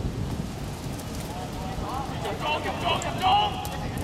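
Short raised shouts from about a second and a half in until near the end, loudest about three seconds in, over a steady low rush of outdoor background noise.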